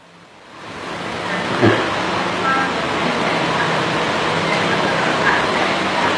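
Steady rushing background noise that fades in over about the first second and then holds, with faint voices in it.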